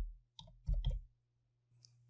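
Computer keyboard keystrokes: about four quick clicks in the first second as a short word is typed, then a pause.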